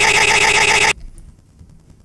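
A loud, harsh buzzing sound effect with a rapid wavering. It cuts off suddenly about a second in and leaves only faint background.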